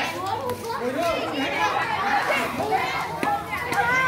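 Many children's voices chattering and calling out over one another as they play together.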